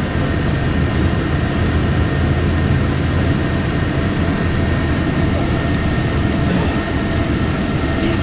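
Steady engine and road noise heard from inside a moving tour bus: an even low rumble with a faint steady whine above it.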